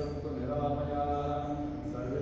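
A man's voice chanting a mantra in a sung recitation, holding each note for about half a second to a second on a few pitches.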